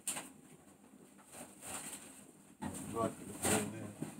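Shopping bags being handled and rummaged through, with a click at the start and a rustle about three and a half seconds in, and a short low voice sound shortly before it.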